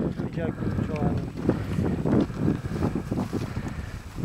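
Wind buffeting the microphone in an irregular, gusting low rumble, with a brief faint voice early on.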